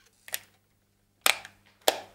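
Camera shutter clicking three times as product shots are taken: a faint click near the start, then two louder clicks about half a second apart.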